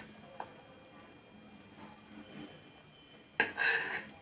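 A short, loud sniff near the end, taking in the smell of a bowl of freshly cooked pulao. Before it there is only faint room noise, with a light click about half a second in.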